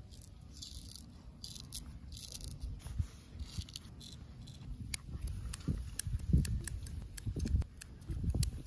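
Straight razor scraping through facial stubble in short strokes. In the second half come sharp clicks of scissors snipping at the mustache, with low thumps of handling.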